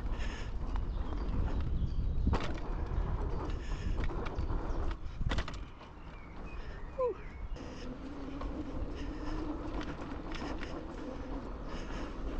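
Fat-tyre e-bike riding over a dirt trail: a steady rumble of tyres and wind with sharp knocks about two and five seconds in, and a rider's short "ooh" about seven seconds in. A faint steady hum sits under the rumble in the second half.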